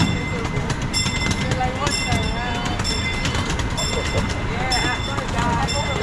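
A bell striking about once a second, each strike ringing on briefly, as the miniature train passes a railroad crossing, over the steady low rumble of the train running on its track.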